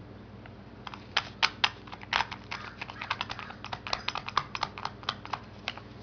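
A rapid, irregular run of light, sharp clicks and taps, starting about a second in and stopping shortly before the end.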